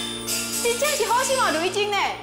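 Speech over steady background music.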